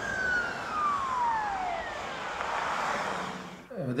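Emergency vehicle siren wailing, one slow rise and fall in pitch, over a steady hiss of street noise. It stops abruptly near the end.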